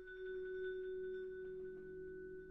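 Wind ensemble playing a quiet sustained passage: one note held steadily, with two lower notes coming in softly beneath it.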